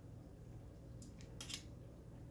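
Metal kitchen tongs clicking and scraping against a wire-mesh strainer as cabbage leaves are lifted from a pot, a few short clicks in the second half, the loudest about three quarters in, over a faint steady low hum.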